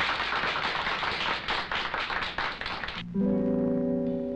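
Audience applauding for about three seconds, cutting off suddenly as a band starts playing held chords over a bass line.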